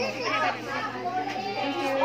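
Several people talking over one another: the mixed chatter of a crowd of women and children.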